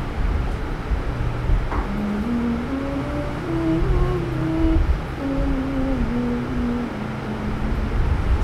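A woman's voice humming a slow, wordless tune in held notes that step up and down, starting about two seconds in and ending near the end, over a steady low rumble.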